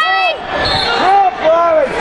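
Several people shouting over one another in a gym during a wrestling bout, with drawn-out rising-and-falling calls, over a few low thuds.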